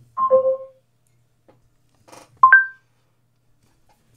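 Google Home smart speaker's two-note chimes: a falling pair of tones just after the start, and a rising pair about two and a half seconds in. These are the Google Assistant's earcons for a conversation ending and for starting to listen for a command.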